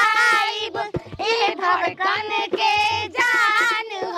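A woman singing a devotional folk song in a high voice, in phrases of held, wavering notes with short breaks between them.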